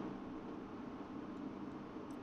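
Faint, steady road and wind noise of a pickup towing a trailer at highway speed, a constant hiss over a low hum.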